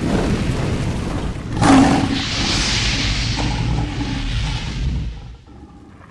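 Cinematic logo-intro sound effects: a low rumble, a loud boom about a second and a half in, then a hissing rush that swells and fades away near the end.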